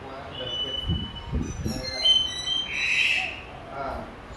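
Bird calls: a few high whistled notes in the first second, a burst of high chirps about two seconds in, then a louder, harsher squawk about three seconds in. A short spoken "à" comes in between.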